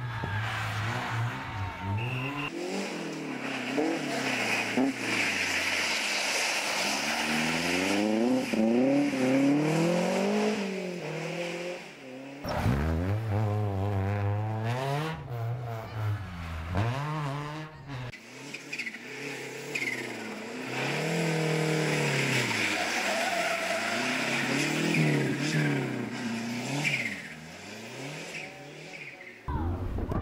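Rally car engines revving hard, the pitch climbing and dropping again and again through the gear changes as one car after another accelerates past.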